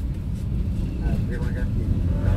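Steady low rumble of a car on the move, heard inside the cabin, with a radio voice talking over it.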